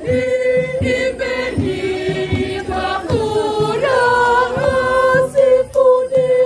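A group of voices singing a Swahili hymn in unison, in long held notes, with a low regular beat underneath.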